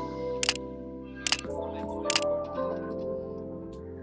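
Background music with sustained chords, cut through by three sharp clicks or snaps, each a little under a second apart, in the first half.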